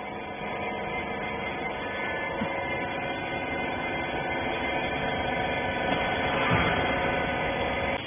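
Steady hum of a running baler machine, a machine hum of many steady tones that swells a little about six seconds in.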